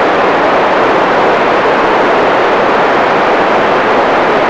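Loud, steady hiss of FM radio static from the receiver's speaker, with no signal coming through from the space station between transmissions.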